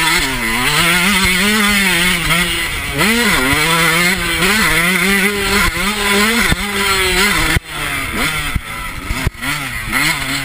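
Yamaha YZ125 two-stroke motocross engine ridden hard, revving up and falling back over and over as the throttle is opened and shut, with a sudden drop in revs about three-quarters of the way through.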